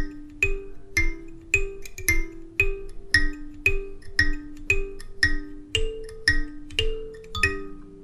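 Goshen Student Karimba, a small kalimba with metal tines on a wooden board, plucked by thumbs in a simple repeating riff of about two notes a second. Each note starts with a light click and rings on. The riff stays mostly on the 5 and 1 tines (D and G), with the right thumb now and then going to 6 and the left to 2.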